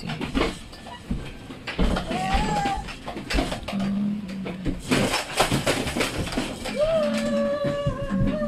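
Crinkling and clicking of thin black plastic nursery pots and soil being handled, densest about five seconds in, with short pitched sounds like a distant voice in the background.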